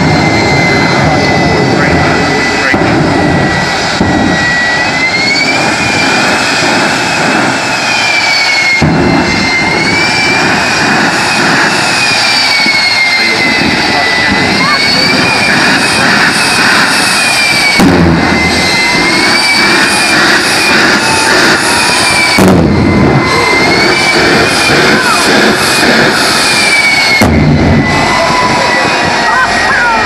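Jet engine of the School Time jet-powered school bus running loud, its turbine whine rising and falling in swells every few seconds over a steady roar as the engine is worked up and down to warm it before full power.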